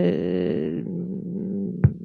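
A woman's drawn-out hesitation sound, one held vowel through a handheld microphone, fading away over about a second and a half, followed by a short click near the end.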